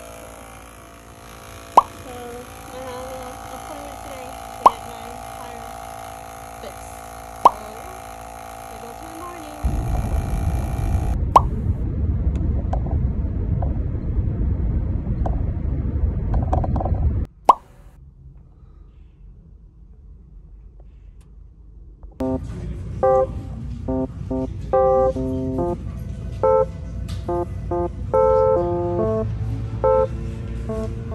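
Portable tire inflator running with a steady hum, with sharp clicks about every three seconds; about ten seconds in it cuts to a loud low rumble of a van on the road heard from inside the cabin, and from about two-thirds of the way through, light plucked-string background music takes over.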